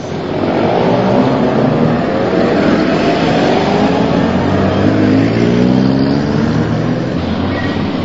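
Motor vehicle engine pulling away and driving on, its pitch rising as it gathers speed, over a steady rushing road noise.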